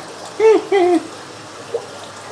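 Water running steadily from a hose into an aquarium as it fills. About half a second in, a man makes a short wordless two-note vocal sound over it.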